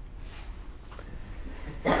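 A pause in a man's lecture: low, steady background hum of the recording, with his voice starting again at the very end.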